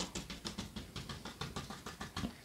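Fan brush loaded with thick white oil paint dabbed quickly and repeatedly against a canvas, a faint, even run of soft taps, several a second, laying on textured snow.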